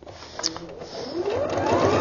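EverSewn Sparrow X sewing machine stitching, its motor whine rising and then falling in pitch as it speeds up and slows, with a click about half a second in.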